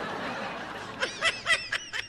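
A person laughing: a breathy exhale, then a quick run of short, snickering laughs starting about a second in.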